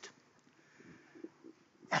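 A quiet pause in a man's spoken prayer, holding only faint, scattered soft sounds in the hall; his voice comes back right at the end.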